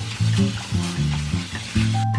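Water from a kitchen tap spraying onto cherry tomatoes in a stainless steel colander, a steady hiss, over background music with a pulsing bass line.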